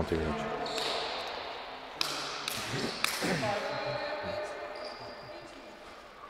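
Futsal ball kicked and bouncing on a sports-hall floor: sharp knocks at the start, then three more around two to three seconds in, ringing in the echoing hall. Players' short shouts come with them, one at the start and another just after three seconds in.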